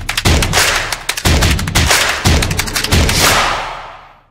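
Intro sound effect with heavy low drum thumps about every half second under a dense crackle of sharp clicks, fading out near the end.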